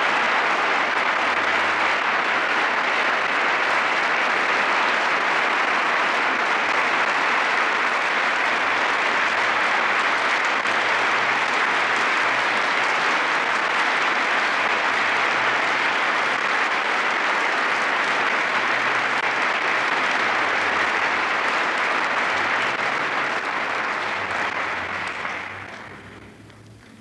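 A large audience applauding, steady and sustained, dying away near the end.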